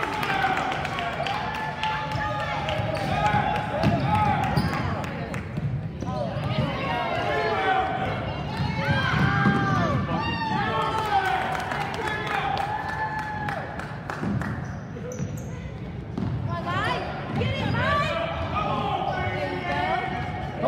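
A basketball bouncing on a hardwood gym floor during play, with sharp impacts scattered through. Spectators' voices call out over the game.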